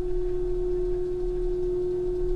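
3D printer's Y-axis stepper motor driving the bed at constant speed while homing toward its end stop switch, giving a steady single-pitch whine.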